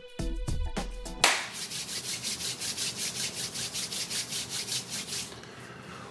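Background music with a beat cuts off about a second in, followed by a rhythmic scratchy rubbing noise, about five strokes a second, that fades out near the end.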